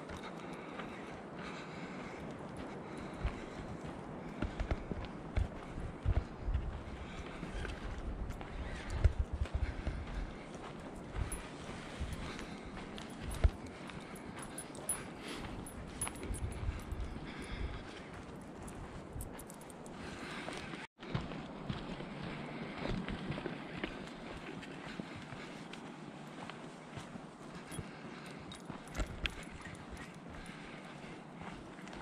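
Footsteps of a person walking along a dirt forest trail: irregular soft thumps over a steady background hiss.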